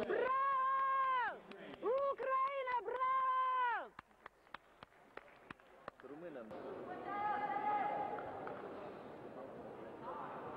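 A man's voice over the arena public address calling out the bout's result in long, drawn-out held syllables, three loud calls in the first four seconds. A run of sharp clicks follows, then a fainter held call.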